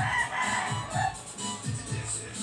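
A rooster crows once, for about a second, over background music with a steady beat.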